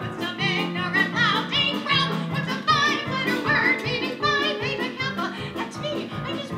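A woman singing a show tune live with a wide, wavering vibrato, over instrumental accompaniment with drums.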